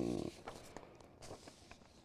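A man's voice trails off, then faint footsteps follow: a few soft, irregular steps over a low background hiss.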